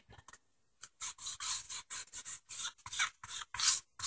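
Short rubbing and scraping strokes, about a dozen in quick, irregular succession starting about a second in, as wet spray paint is dabbed and dragged by hand across a foam board.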